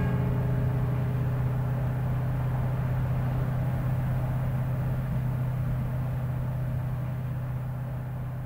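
A Mini car driving, heard from inside its cabin: a steady low engine and road drone that slowly gets quieter.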